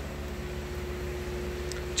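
Steady low hum and hiss with a faint steady tone: background room noise, with no distinct event.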